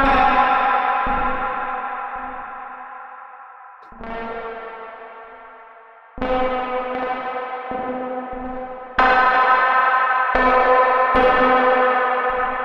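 Nebula Clouds Synthesizer (a Reaktor 6 ensemble) playing sustained FM-like synth tones rich in overtones, with echo. New notes sound about every two to three seconds, each fading slowly, over a stuttering low pulse.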